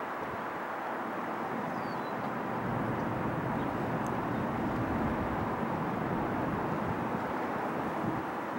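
Distant helicopter, a steady rumble that grows louder about three seconds in as it approaches. A couple of faint bird chirps sound over it.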